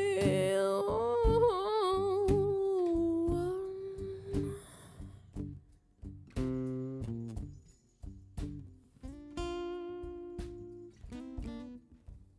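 Acoustic band ending a song with a fade: a woman's voice holds a note with vibrato that dies away about four seconds in, followed by sparse, quieter picked acoustic guitar notes.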